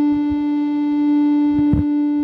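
Seeing AI's Light channel tone holding a steady low pitch, the sign that the phone camera sees darkness, with a brief knock near the end.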